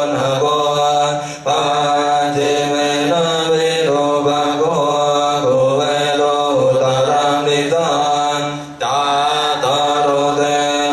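A group chanting Buddhist verses together in a steady, sustained recitation, with two short breaks for breath.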